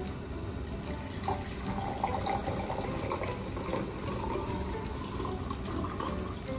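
Water poured in a thin stream into a glass tumbler, starting about a second in, with the splashing of the stream into the filling glass.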